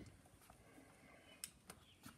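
Near silence: room tone, with two faint short clicks a little under a second apart near the end.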